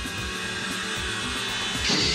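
Suspenseful film score swelling, with a hiss rising through it; a loud, harsh screech breaks in near the end.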